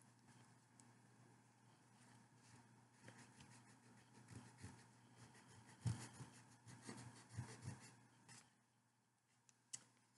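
Faint rubbing and scratching of a fingertip and then a damp cloth scrubbing wet paper backing off a wooden board, in irregular short strokes that are loudest around the middle. The rubbing stops shortly before the end, followed by a soft click.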